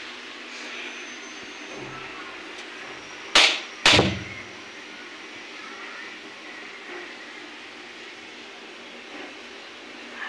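Two sharp knocks about half a second apart, a few seconds in, from a lidded aluminium pot being handled on a gas stove, over a steady low hiss.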